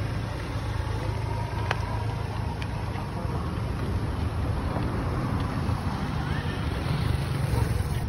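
Steady low rumble of wind and handling noise on a phone microphone carried while walking, with a single sharp click nearly two seconds in.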